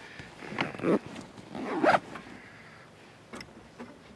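Two short swishes of fabric and handling noise close to the microphone, about a second apart, then a couple of faint clicks near the end.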